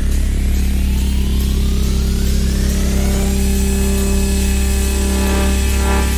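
Techno build-up: a synth sweep rising steadily in pitch over a held deep bass drone, levelling off about three seconds in into a sustained high chord.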